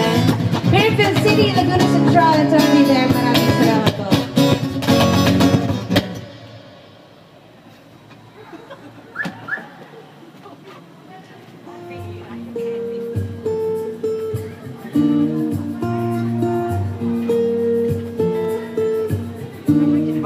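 Acoustic guitar picking a repeating pattern of notes and chords, starting about twelve seconds in. Before that, a loud mix of music and voices cuts off sharply about six seconds in, leaving a quiet stretch with scattered voices.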